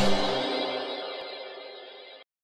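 Logo-ident music: a final held chord ringing and steadily fading away.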